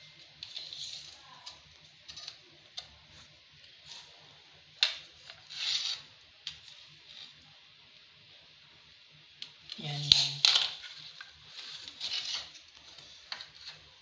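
Ceramic tiles clinking, knocking and scraping against each other and the floor as they are handled and measured, with scattered light clicks, two scraping bursts midway, and a sharp knock about ten seconds in.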